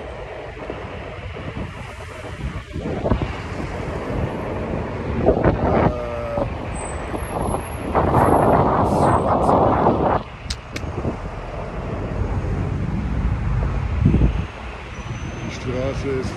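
Road traffic going by, with wind buffeting the microphone. There is a louder rush of traffic about eight seconds in that lasts about two seconds.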